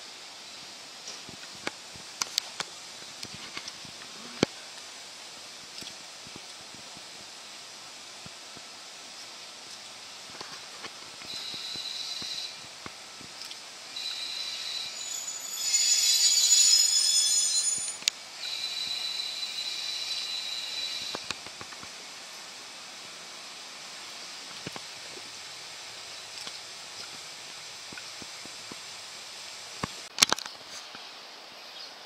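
KiHa 48 diesel railcar rolling slowly into a station, its wheels setting up a high metallic squeal that comes and goes for about ten seconds and peaks just past the middle. A few sharp clicks come in the first few seconds.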